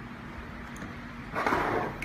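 Quiet room noise, then a brief rustle of hands handling equipment about a second and a half in, lasting about half a second.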